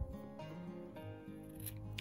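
Soft background music with steady held notes.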